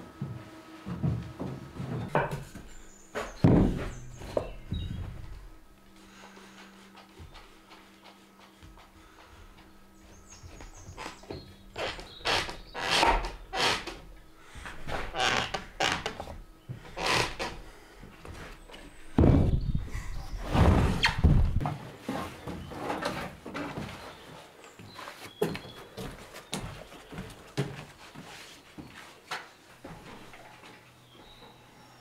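Irregular wooden knocks and thuds as timber noggin blocks are handled and fitted between floor joists. They come in three busy clusters, with a quieter stretch between the first two.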